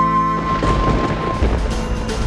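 Background score holding a high note over sustained chords. About half a second in, a low rumble of thunder with a rain-like hiss takes over, and the held note fades out a little later.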